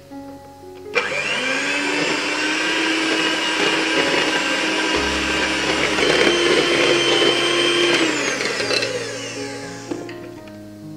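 Electric hand mixer with wire beaters switched on about a second in, running steadily with a motor whine while beating butter, powdered sugar and egg yolks until fluffy, then winding down, its pitch falling, near the end.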